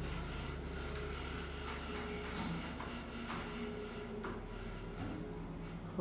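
Circa-1977 Otis-branded hydraulic passenger elevator travelling up, with a steady low hum from its running pump motor and scattered light clicks and creaks from the car. The lowest part of the hum drops away about halfway through.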